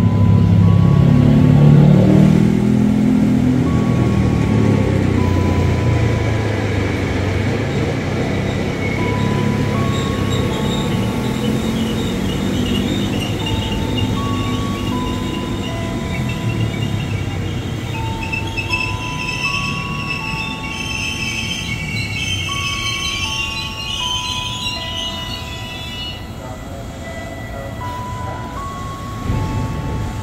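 A KRL Commuter Line electric multiple-unit train pulls into the platform, its low running rumble loudest in the first few seconds and easing off as it comes to a stand. Over it, a slow tune of single notes plays.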